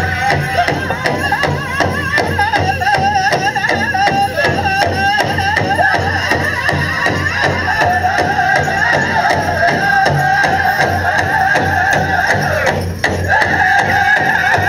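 Pow wow drum group singing a Grand Entry song: a big drum struck in a steady, even beat under high voices singing together with a wavering, ornamented line. The singing drops out for a moment near the end, then comes back in.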